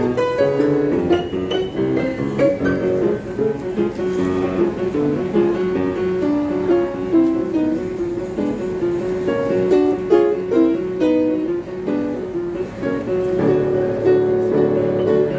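Upright piano playing a fast classical piece, a dense, continuous stream of quick notes mostly in the middle register.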